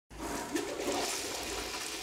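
A toilet flushing: a steady rush of water that starts suddenly right at the beginning.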